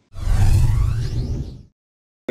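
Editing transition whoosh sound effect with a deep rumble underneath. It starts suddenly and fades out after about a second and a half.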